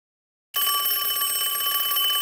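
Electric telephone bell ringing continuously, starting suddenly about half a second in. It is an emergency call coming in to the rescue headquarters.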